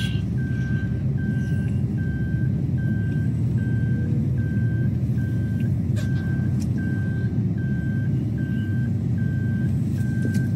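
Car driving with a steady low road and engine rumble in the cabin, and a short high electronic beep repeating evenly, about one and a half times a second.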